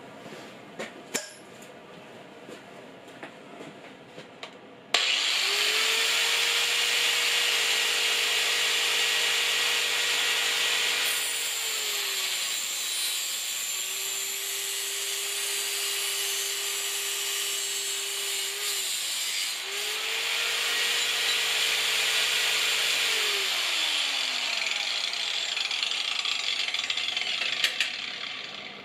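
Parkside PWS 125 E4 angle grinder in a chop stand, starting suddenly about five seconds in and cutting through a pipe: a steady motor whine over the grinding hiss of the cutting disc. The whine sags in pitch each time the disc is pressed into the cut and falls away near the end, and the grinder stops at the very end.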